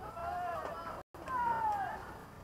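A high-pitched human voice calling out twice in long, drawn-out yells, the second falling in pitch, with a brief cut in the sound between them.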